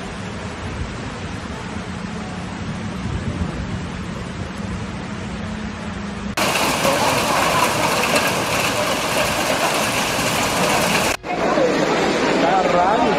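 Steady rushing noise of heavy rain and floodwater, with a low hum under it at first. About six seconds in it cuts sharply to a louder, brighter hiss, and near the end a person's voice is heard over the downpour.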